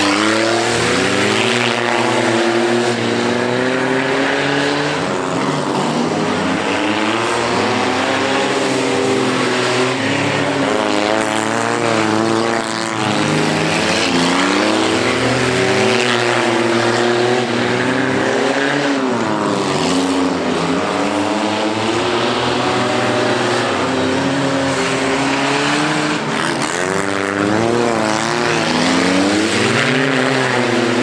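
Several race car engines revving together, each one's pitch climbing and dropping again and again as the cars accelerate out of the turns and slow into them.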